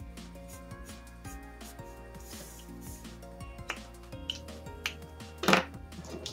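Background music with held notes, over light scratchy strokes of a felt marker tip on paper. A short, louder knock comes near the end.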